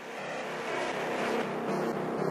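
Opening of an EBM/industrial track: a dense, noisy, engine-like electronic drone fades in and slowly grows louder.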